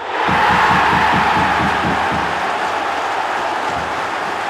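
Football crowd roaring in a sudden cheer as a goal goes in, loudest about half a second in and then slowly easing off, with rapid low thumps running underneath.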